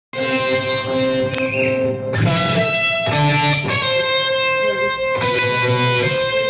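Electric guitar played live, chords ringing and changing about once a second. It cuts in abruptly at the very start, mid-song.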